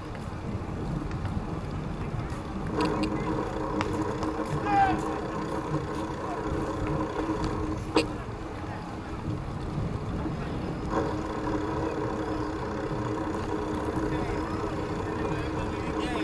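Open-air walkway ambience: a steady low rumble with faint voices, and a steady mechanical hum that sets in a few seconds in, drops out about eight seconds in, and comes back a few seconds later. A single sharp click about eight seconds in.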